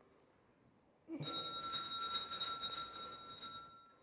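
Altar bells ringing at the elevation of the host, the signal that the bread has just been consecrated. The ringing starts about a second in as a bright, slightly fluttering peal of several high tones and dies away near the end.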